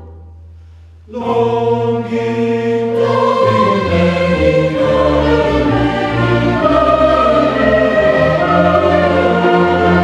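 Large mixed choir singing with an orchestra of violins and clarinets. After a brief hush at the start, choir and orchestra come in together about a second in and carry on with sustained chords.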